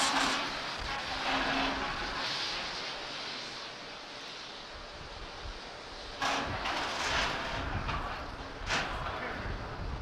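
Steady rushing noise from the open launch-pad microphone beside a fuelled Falcon 9. It dips in the middle and swells again about six seconds in, with brief sharper gusts around six and nine seconds.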